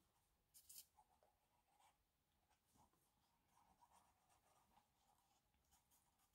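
Near silence, with faint, brief rustles and scrapes of cardstock being handled as paper tabs are pressed and glued down.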